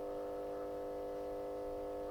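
Steady electrical hum on the broadcast line, a buzz of several evenly spaced tones holding at one level.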